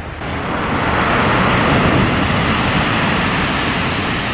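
Sea waves breaking and washing up a pebble beach: a rush of surf that swells over about a second and then slowly eases.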